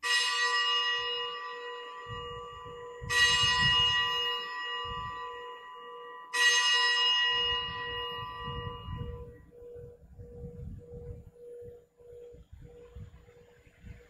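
Altar bell struck three times, about three seconds apart, each ring fading away before the next; rung at the elevation of the chalice after its consecration at Mass.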